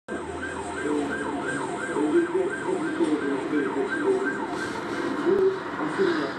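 A siren yelping: a wailing tone that sweeps up and down about three times a second.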